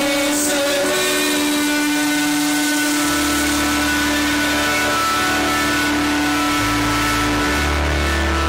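Live rock band playing an instrumental passage: a long held chord over a noisy wash, with bass notes coming in about three seconds in and changing twice near the end.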